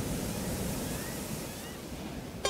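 Ocean surf on the soundtrack: a steady wash of breaking waves, with a few faint short rising whistles partway through.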